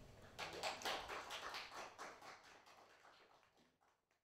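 Audience applauding, a dense run of claps that starts about half a second in and fades away to nothing by the end.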